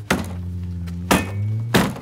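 A hand knocking a loose plastic front bumper cover and headlight back into place: three sharp thunks, one right at the start and two close together in the second half. A steady low hum runs underneath.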